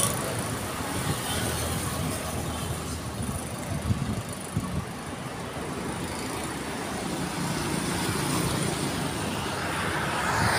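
Road traffic: a steady low rumble of vehicles on the road, with a few brief peaks about four seconds in and an engine drawing closer near the end.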